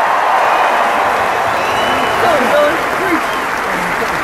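A large arena crowd applauding and cheering, with scattered shouts and whoops over steady clapping.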